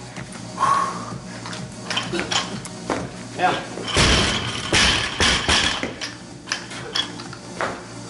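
A loaded barbell with black bumper plates dropped from overhead onto a rubber lifting platform about four seconds in: one heavy thud, then several smaller bounces as the bar settles.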